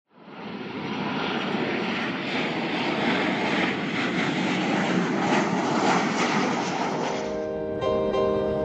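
Jet engine noise of an airliner flying low on landing approach, a steady rush that fades in at the start. Piano music comes in near the end.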